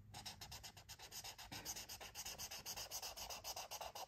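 Pink felt-tip highlighter rubbed rapidly back and forth on paper, colouring in a square: a quiet, even run of scratchy strokes, several a second.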